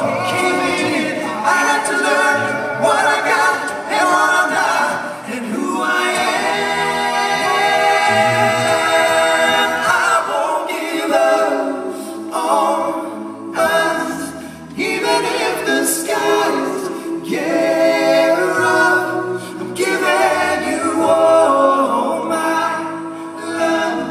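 All-male a cappella group singing in close harmony without instruments, several voices stacked over a bass voice carrying the low line, with long held chords partway through.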